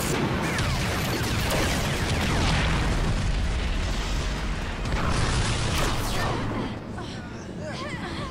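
A barrage of staged action-film explosions, a dense continuous rumble of blasts with falling whistles in the first couple of seconds. A fresh blast comes about five seconds in, and the din dies down near the end.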